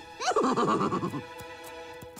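A cartoon unicorn whinnying, a quavering neigh lasting about a second, over light background music.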